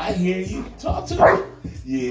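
Large black dog vocalizing on the command to "talk": a short series of voice-like woofs, the loudest and highest about a second in.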